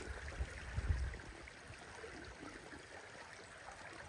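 Shallow stream water running steadily, with a few low bumps in the first second or so.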